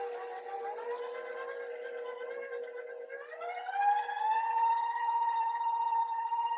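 Electric stand mixer running with its wire whisk beating roasted sweet potatoes into a purée. About three seconds in it is switched to a higher speed: the motor whine rises in pitch, gets louder, then holds steady.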